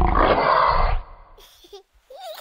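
Jump-scare screamer sound effect: a loud, harsh, noisy scream that cuts in suddenly, holds for about a second, then fades away.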